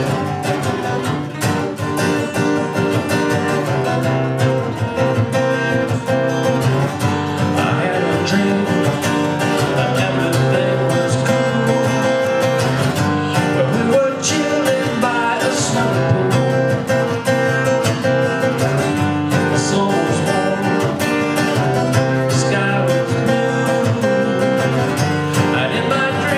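Acoustic guitar strummed steadily in chords, with a man singing along.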